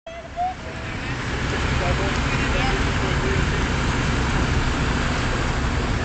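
Steady roadside traffic noise with a low rumble, growing louder over the first second or so, with faint distant voices in the background.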